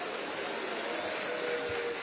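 Live audience applauding steadily, a dense, even patter of clapping.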